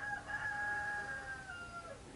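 A rooster crowing once: one long call that holds its pitch for about a second and a half, then drops at the end.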